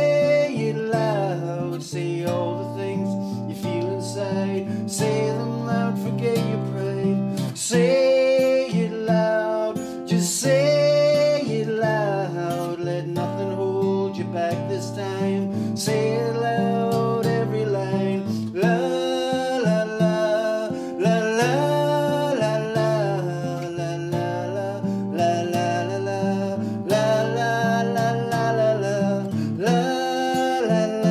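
Guild acoustic guitar with a capo, played steadily through a passage of a song, its chords changing every second or two.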